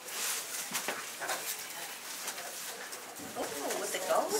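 Handling noise as a cloth towel is swished about and table microphones are touched: rustling and a few knocks. Near the end there is a short vocal sound.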